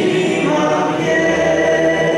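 A woman singing a Romanian Christian hymn into a handheld microphone, holding long notes.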